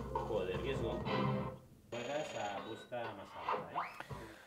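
Quiet electronic tunes and beeps from a fruit slot machine being played, mixed with indistinct voices.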